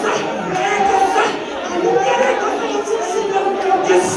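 A congregation praying aloud all at once: many women's voices overlapping in an unbroken jumble of speech in a large hall.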